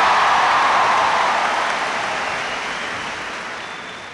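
Audience applauding, loudest at first and slowly dying away.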